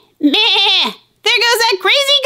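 A goat bleating: two wavering, trembling bleats, the second starting just after a second in.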